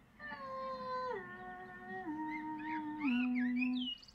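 A high voice singing four long wordless notes that step down in pitch, each held about a second, with faint warbling high sounds near the end.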